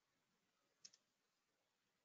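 Near silence, broken about a second in by a faint, quick double click of a computer mouse.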